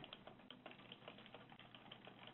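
Faint, irregular clicking of typing on a computer keyboard, several keystrokes a second.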